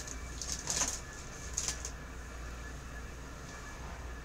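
Brief rustling of items being handled as someone reaches down, twice in the first two seconds, then only a low steady hum.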